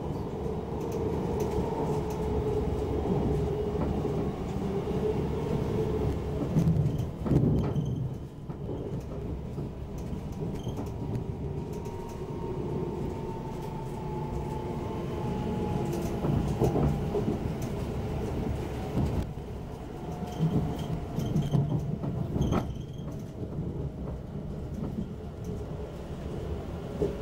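Inside a Class 720 Aventra electric multiple unit running into a station: a steady rumble of wheels on the track, with a few sharp clacks over joints or points. A thin whine from the traction equipment falls slowly in pitch as the train slows.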